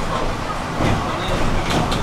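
City bus running along a wet road, heard from inside the passenger cabin: a steady mix of engine and tyre noise. A few sharp clicks or rattles come near the end.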